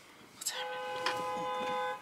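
A car horn blown in one long, steady blast of about a second and a half, starting about half a second in and cutting off suddenly near the end, heard from inside a car.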